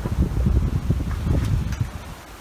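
Wind buffeting the phone's microphone on deck, an irregular low rumble in gusts that drops away near the end.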